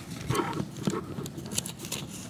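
Paper rustling with light clicks at a pulpit lectern, as Bible pages are handled, and a brief low throat noise in the first second.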